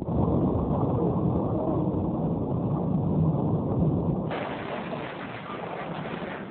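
Loud, steady rumbling noise of a vehicle on the move, heaviest in the low end, turning brighter and hissier about four seconds in.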